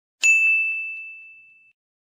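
A single bright ding: one chime struck about a fifth of a second in, ringing on one clear tone and fading out over about a second and a half. It is a logo sound effect.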